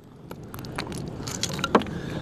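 Rock pieces and beach cobbles clinking and clattering as a split concretion and a rock hammer are handled and set down on stones: a handful of light knocks, the clearest just before the end, over a steady background rush.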